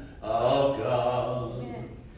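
A man singing a hymn solo, holding one long steady note for over a second before letting it fade.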